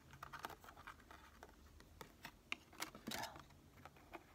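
Faint scattered clicks and scratches of tarot cards being handled and laid down on a bamboo place mat.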